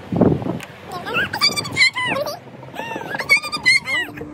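A child's high-pitched, wordless vocal sounds: two short runs of rising and falling squeals, about a second in and again near the end.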